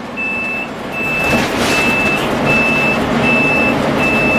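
A motorhome's turn-signal warning beeper sounds a high single-tone beep, five times at about three quarters of a second apart, over steady road and engine noise in the cab of the 2005 Country Coach Inspire diesel pusher at highway speed.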